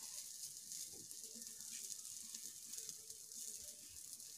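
Faint, steady sizzle of an aloo paratha frying in oil on a dosa tawa.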